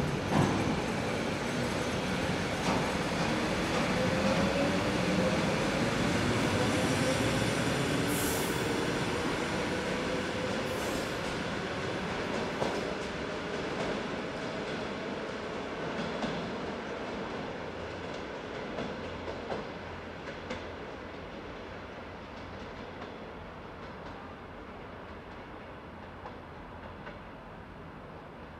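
ED4M electric multiple unit pulling away and accelerating, its traction motors whining steadily upward in pitch over the first half, with wheel clatter on the rails. Two short high hisses come about 8 and 11 seconds in, and the whole sound fades as the train draws away.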